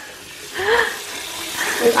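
Kitchen tap running into a stainless-steel sink full of water, splashing as tubs are moved about in it.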